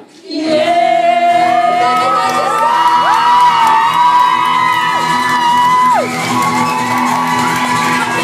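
Live sing-along song, with voices holding long sung notes over steady accompaniment and shouts and whoops from the crowd. One long high note slides down and breaks off about six seconds in.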